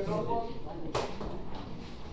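Classroom chatter of several students' voices, with a single sharp knock about a second in.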